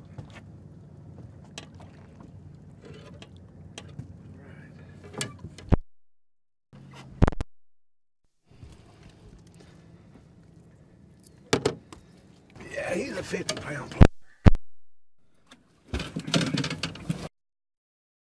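A catfish being handled in a boat while it is netted and unhooked: a series of sharp knocks and clunks on the hull and net. Near the end come two noisy bursts of thrashing as the fish struggles.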